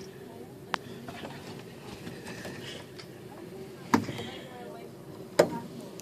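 Muffled, indistinct voices from the adjoining room, with three sharp clicks or knocks: a faint one about a second in, then louder ones about four seconds in and near the end.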